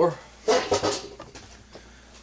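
A man's voice briefly, then a quieter stretch with a few faint clicks of handling.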